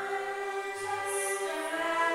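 Vocal ensemble singing in a reverberant church, holding a long note that moves to a new one near the end.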